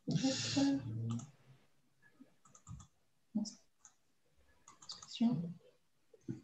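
Computer mouse clicking several times in short groups while folders are opened, with a brief untranscribed murmur of voice in the first second.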